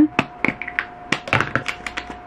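Small clicks and taps of makeup products being handled: tubes, caps and applicators knocking together and clicking, about a dozen sharp little sounds in two seconds, over a faint steady hum.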